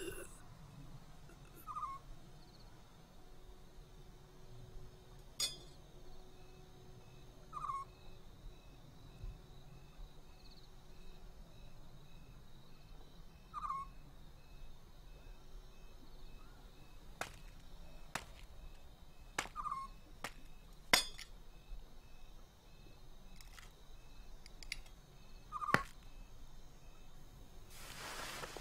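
An owl hooting: one short, slightly falling call repeated about every six seconds, five times, over a quiet night background. Scattered sharp clicks and light metallic clinks come in between, mostly in the second half.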